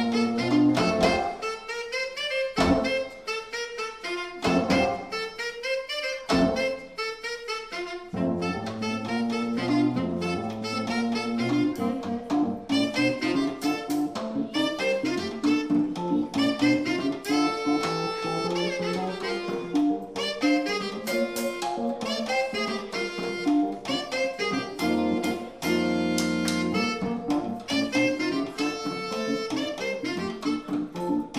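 Live jazz from a quartet of saxophone, electric guitar, keyboards and drums, with the saxophone to the fore. The first eight seconds are sparse, broken by drum hits, and the band then fills out into a steady groove with a bass line underneath.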